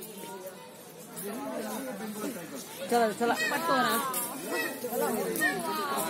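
Several people's voices chattering and overlapping, louder from about three seconds in.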